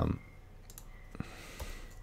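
A few faint, isolated clicks from a computer keyboard while renaming a clip in an editing program, the clearest a little over a second in.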